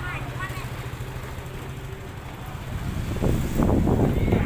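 Motor scooter engine idling close by with a steady low hum, with a few words of talk at the start. About three seconds in, a louder, rough rumble builds up.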